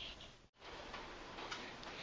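Faint room noise with a few soft ticks. The sound cuts out completely for a moment about a quarter of the way in.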